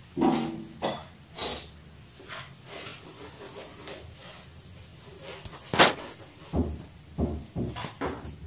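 Chalk knocking and scraping on a chalkboard as an equation is written, in irregular taps, the sharpest about six seconds in and a few duller thuds near the end. A short pitched sound comes right at the start.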